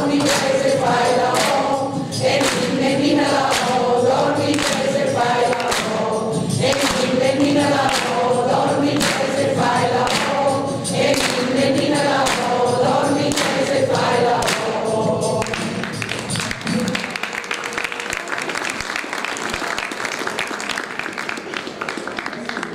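Mixed amateur choir singing a Christmas song over a backing track, with the singers clapping along in a steady rhythm. The singing ends about fifteen seconds in, and applause follows to the end.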